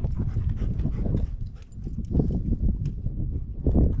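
Wind buffeting the microphone in an uneven low rumble, with scattered light taps and clicks throughout.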